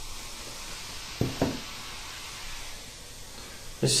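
Baking soda and vinegar reacting in a glass measuring cup: a steady fizzing hiss of bubbling carbon dioxide. Two soft knocks come about a second in.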